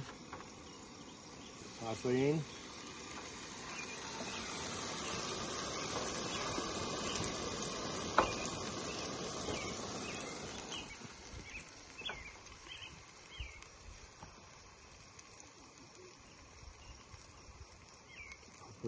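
Wet boiled gnocchi sizzling as they are dropped into a hot frying pan of olive oil and tomato sauce, the sizzle swelling for several seconds in the middle and then dying down. A sharp clink of the slotted spoon against the pan is heard near the middle and again a few seconds later, with short bird chirps behind.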